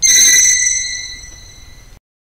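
Logo-reveal sound effect: a sudden bright, high ringing of several tones with a shimmer on top, fading away over about a second and a half before it cuts off abruptly.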